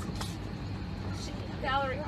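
Steady low hum of an airliner cabin, with a woman's voice starting again near the end.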